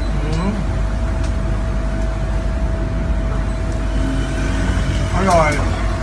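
Steady low background rumble with a constant faint hum under it. A short vocal sound comes just after the start, and a voice about five seconds in.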